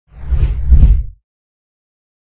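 A whoosh transition sound effect with a deep bass rumble under it, swelling for about a second and then cutting off suddenly.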